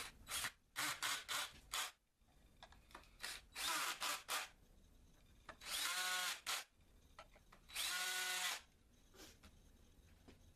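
Cordless drill driving screws into plywood: several short trigger bursts in the first half, then two longer runs of about a second each with a steady motor whine.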